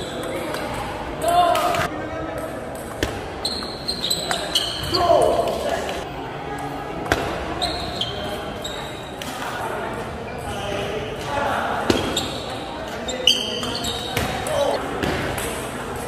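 Table tennis ball clicking off the paddles and the table during rallies: sharp, irregular knocks at uneven intervals.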